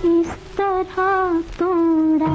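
A woman's voice humming a melody from an old Hindi film song, in about four held notes with vibrato and short breaks between them.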